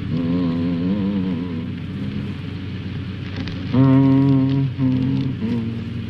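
A man singing slowly in a low voice, the pitch wavering at first, then long steady held notes about two-thirds of the way through, over the constant hum and hiss of an old film soundtrack.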